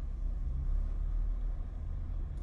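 A steady low rumble of background noise, with no speech.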